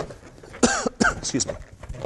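A man coughing twice in quick succession, about half a second and a second in.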